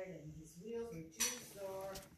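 A person's voice, low and unclear, with one sharp click-like sound a little past the middle.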